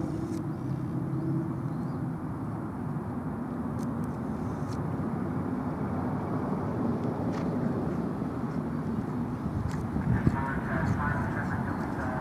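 Steady outdoor background noise with faint distant voices, and a brief knock about ten seconds in.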